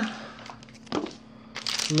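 Plastic packaging of a glow stick crinkling as it is handled, quiet at first and louder near the end, over a faint steady hum.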